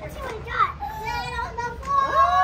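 A small girl's excited high-pitched voice, drawn-out gliding exclamations from about a second in, over the chatter of a party room.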